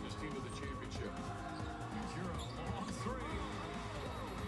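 A basketball dribbling on a hardwood court during play, over arena crowd noise, heard through a TV's speaker.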